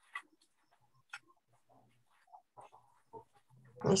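A recorded sound effect from a listening exercise, played over a video call and barely coming through: only scattered faint blips and clicks are heard. It is very low, so the sound itself cannot be made out.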